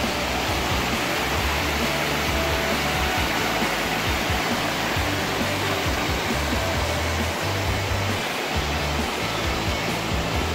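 Shallow, rocky mountain stream rushing steadily over boulders and small cascades. Underneath it are low, held bass notes from background music that change every second or so.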